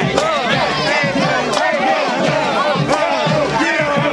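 A huddle of football players shouting and yelling together, many loud overlapping voices hyping one another up.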